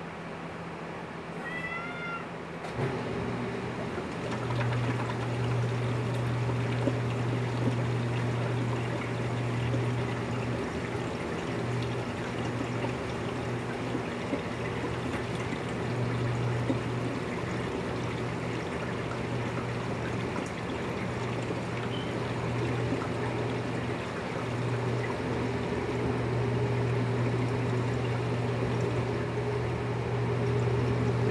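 A steady low hum with a noisy background sets in about three seconds in, and a brief high squeak comes just before it.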